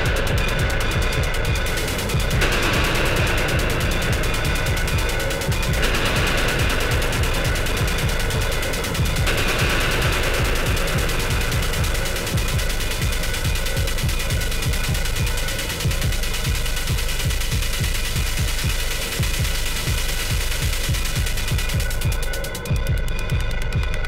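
Live improvised electronic music played on hardware synthesizers and drum machines. A fast, pulsing bass line runs throughout, and a brighter hissy layer swells in and out every few seconds in the first half.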